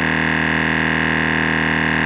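MotoMaster heavy-duty twin-cylinder tire inflator running steadily at one even pitch, under load as it pumps a tire past 70 PSI toward a set 80 PSI.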